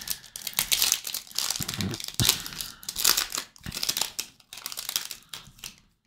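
Foil wrapper of a Topps Chrome trading-card pack being torn open and crinkled by hand: irregular crackling and rustling that thins out near the end.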